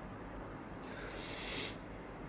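A man's soft intake of breath, a short rush of air that swells about a second in and fades, over faint steady background hiss.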